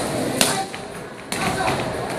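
Two sharp smacks of strikes landing on a handheld taekwondo kick paddle, about a second apart, the first the louder, with hall reverberation.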